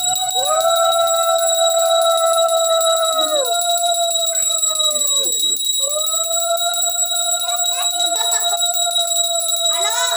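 Small puja hand bell rung continuously through the aarti, a steady high ring. Under it, long held tones of several seconds each, two overlapping at first, each sliding down in pitch as it ends, with a short break about halfway through.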